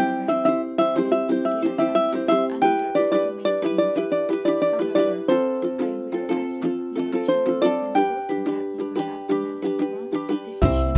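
Background music: a light tune of quick plucked-string notes, ukulele-like, over a steady strummed accompaniment.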